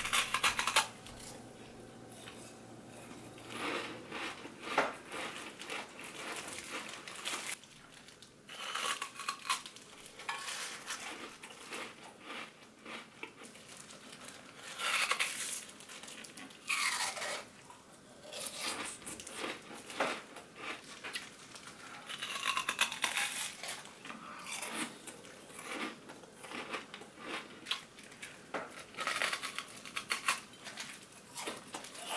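A thin sheet of ice being bitten and chewed: sharp cracking crunches in irregular clusters every few seconds, with quieter crackling in between.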